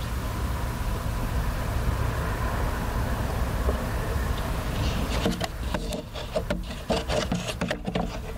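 A steady low rumble inside a parked car. From about five seconds in comes an irregular run of scraping, rubbing and knocking close to the microphone: handling noise on a hidden audio recorder.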